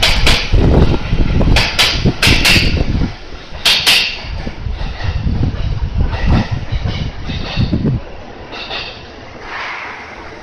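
Electric commuter train pulling out past the platform, its wheels clicking sharply in pairs over rail joints as the cars pass, over a low running rumble. The clicks stop about four seconds in and the rumble fades away by about eight seconds in.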